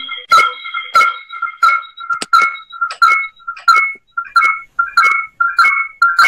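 A dog yapping in quick, evenly repeated barks, about three a second, each on the same high pitch.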